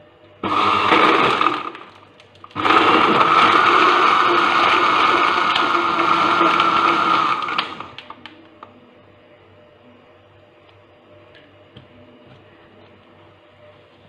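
Electric countertop blender running on a jar of milk, banana and crushed ice: a short pulse about half a second in, then a steady run of about five seconds before it stops.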